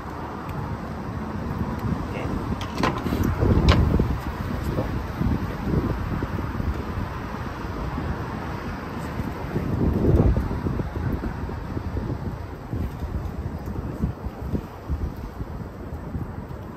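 Wind rumbling on the microphone in gusts, strongest about four seconds in and again about ten seconds in, with two small sharp clicks around three to four seconds in as hands work the wiring.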